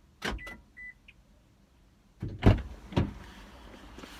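Car door clicks followed by two short high electronic beeps, then two loud knocks and rustling as someone opens the driver's door and climbs into the seat.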